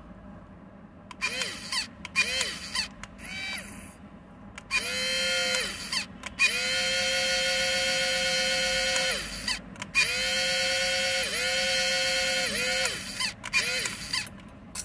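Small electric motors of a homemade mini RC boat whining in on-off runs as they are driven from the remote: each run rises in pitch as the motor spins up, holds a steady high whine, then falls away as it stops. A few short blips come first, then longer runs of one to two and a half seconds.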